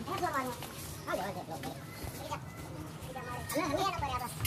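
Indistinct voices of people talking close by in short bursts, about a second in and again near the end, over a steady low hum.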